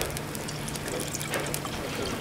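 Sparkling cider poured from a bottle into a wine glass, splashing and fizzing as the glass fills.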